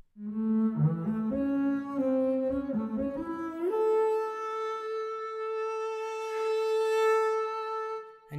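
Leonid Bass sampled solo double bass, bowed and played from a keyboard in its color mode, which blends harmonics and sul ponticello. A short rising line of notes is followed, nearly four seconds in, by a portamento slide up into one long held note.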